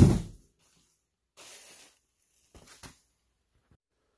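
A sharp thump of cardboard packing being dropped, then a brief soft rustle and a couple of light knocks as the packing is handled.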